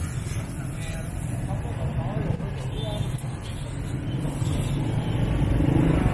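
Motor scooter engines in slow, congested street traffic: a steady low rumble that grows louder near the end, with faint voices mixed in.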